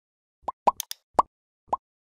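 A quick run of five short cartoon pop sound effects, each a brief rising blip: the sounds of an animated like-and-subscribe button overlay appearing on screen.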